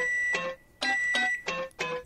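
Electric keyboard notes from the backing beat: a few short chords at changing pitches, with brief silences between them.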